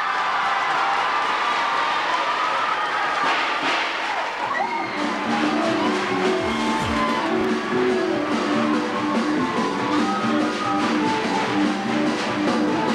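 Crowd noise with clapping and cheering, then from about five seconds in, guitar-led music with a steady repeating rhythm playing over the crowd.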